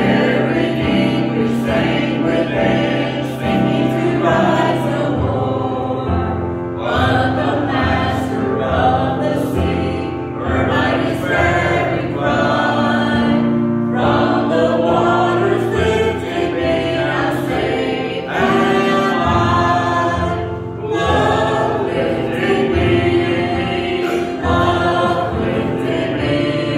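A group of voices singing a hymn together from the hymnal, in phrases a few seconds long with brief breaths between them.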